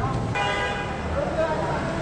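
A horn sounds one long, steady note starting about a third of a second in, over crowd chatter and street noise.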